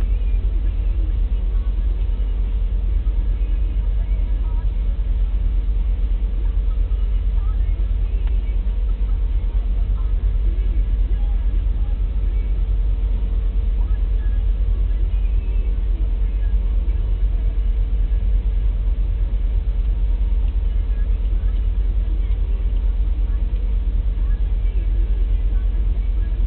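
Loaded coal cars of a freight train rolling slowly past as a loud, steady low rumble with no breaks.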